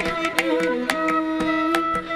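Carnatic classical ensemble playing: bamboo flute and violin holding a melody line with short sliding ornaments between notes, over frequent sharp strokes from mridangam and ghatam.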